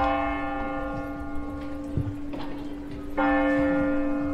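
A large bell struck twice, about three seconds apart, each stroke sudden and ringing on with a slow fade.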